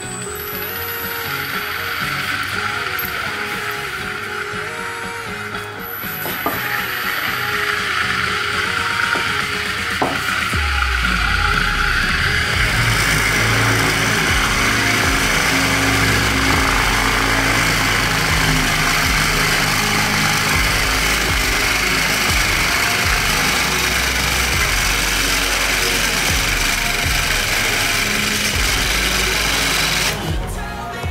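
Background music over a homemade brushless motor driving an 8 mm drill bit: a whine rises as the motor speeds up, then from about halfway in the bit bores into wood with a louder, steady drilling noise.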